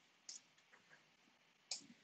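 Near silence with two faint computer-mouse clicks, one about a third of a second in and one near the end.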